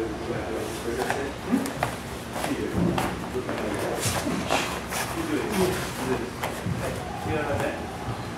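Indistinct voices of several people talking in a large room, with scattered short sharp knocks and rustles of bodies moving on training mats.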